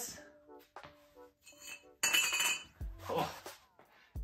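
Background music, with a sudden sharp metallic clink that rings on briefly about halfway through, followed by a short exclamation.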